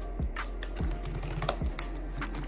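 Light plastic clicks and taps as felt-tip markers and crayons are handled in a plastic art-set case, about five in two seconds, the sharpest near the end. Soft background music plays underneath.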